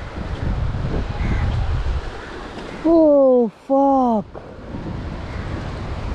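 Wind buffeting the microphone over the sound of surf. About three seconds in, a voice gives two drawn-out calls, each falling in pitch; these are the loudest sounds.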